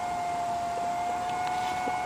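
Steady mid-pitched whine over a faint hiss from solar charging electronics that are running.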